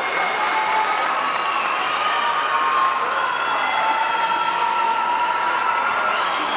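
A crowd of spectators cheering and applauding, many voices shouting at once over a steady wash of clapping, in a large indoor pool hall.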